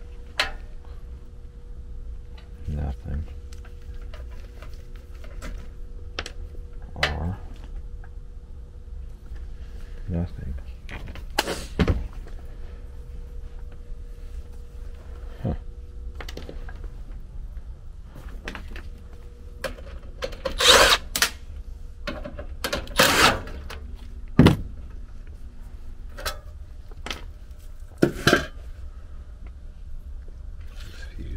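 Steady electrical hum from the energized heat pump air handler, under irregular clicks, knocks and clatter of gloved hands handling meter leads and wiring. The loudest clatter comes in a cluster about two-thirds of the way through, with another knock near the end.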